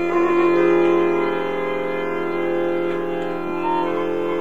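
Accordion playing Bulgarian folk music, sounding long held notes with a full reedy chord underneath.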